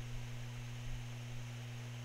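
Steady low electrical hum with a soft hiss behind it: the background noise of the recording setup, heard between sentences.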